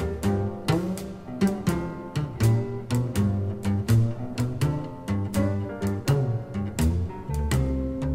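Small blues band playing an instrumental passage, with upright bass carrying the low notes under piano and drums, the drums keeping a steady beat.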